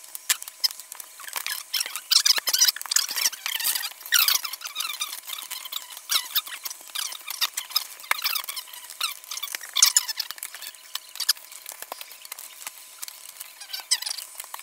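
Handling noise right at the microphone: playing cards and fingers rubbing, sliding and tapping against it, a busy run of squeaky scrapes and sharp clicks.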